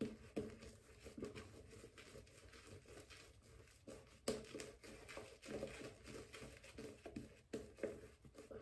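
Faint swishing of a Yaqi Gemini 24 mm silvertip badger shaving brush working lather over the face, in short irregular strokes with a slightly stronger stroke about four seconds in.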